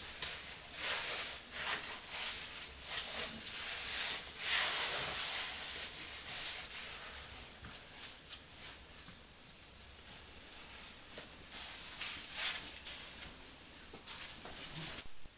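Irregular scuffing and rustling of a caver climbing through a tight rock passage, with oversuit and boots scraping on wet rock. It is loudest in the first few seconds, quieter through the middle, and picks up again near the end.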